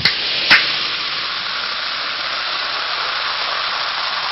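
Two sharp clicks about half a second apart, followed by a steady, even hiss that holds at a constant level and ends abruptly.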